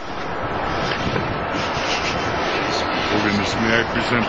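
Loud, steady noise on the soundtrack of a television news broadcast, starting abruptly. A man's voice comes in faintly under it after about three seconds.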